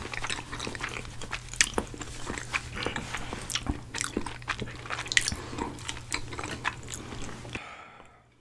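Close-miked eating sounds: a banana being bitten and chewed, with many sharp wet mouth clicks and smacks. They stop abruptly near the end.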